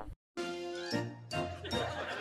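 Edited-in comedy sound effect: a short chiming jingle with a rising sweep, after a brief gap of silence. It changes to a lower tone about a second in.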